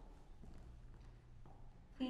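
A few faint footsteps on a wooden stage floor against the hall's quiet room tone.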